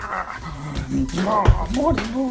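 A dog whining and grumbling in drawn-out calls that rise and fall in pitch, with a single low thump about one and a half seconds in.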